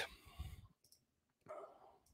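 Near silence, with two faint, brief clicks, about half a second and a second and a half in.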